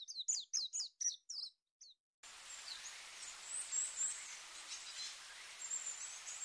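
Birdsong: a fast run of high, downward-sweeping chirps, about six a second, that ends near two seconds in. After a short gap, a steady hiss follows, with faint high bird calls above it.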